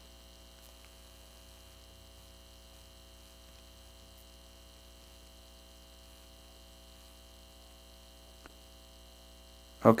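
Faint, steady electrical mains hum in the recording, with a single faint click about eight and a half seconds in.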